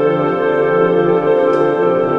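Background music with slow, sustained tones.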